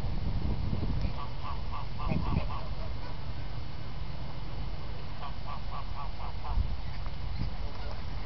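White domestic geese honking in two quick runs of short calls, about six calls each: one a little after the first second, the other about five seconds in.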